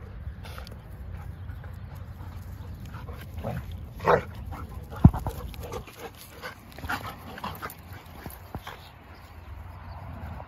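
Two dogs, a German shepherd and a tan-and-white dog, play-fighting, with scattered short vocal calls throughout. The loudest is a brief call about four seconds in, and a sharp knock follows just after five seconds.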